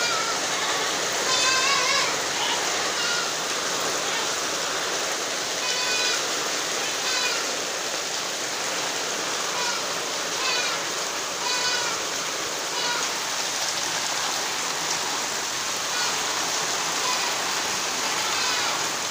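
Heavy rain mixed with hail falling steadily, a dense even hiss. Short high calls break through it every second or two.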